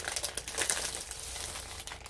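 Plastic packaging crinkling as it is handled, in a run of quick, irregular crackles.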